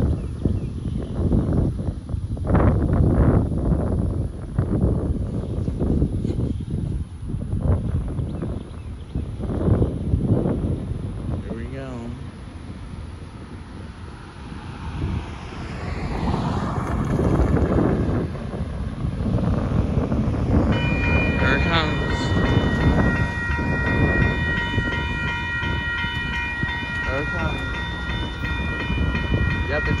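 Wind gusting on the microphone, then about 21 seconds in an electronic railroad-crossing warning bell starts ringing steadily as the crossing signals activate for an approaching train.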